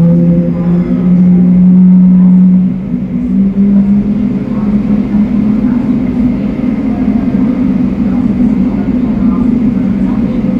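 Engine noise on an airport ramp: a loud, steady low hum whose pitch steps up about a second in and shifts again near three seconds.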